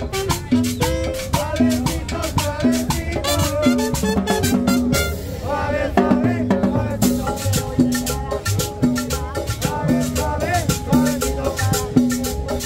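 A live Latin dance band playing an upbeat number: drum kit and hand drums with a metal shaker keeping a steady beat under a repeating bass line and a singing voice.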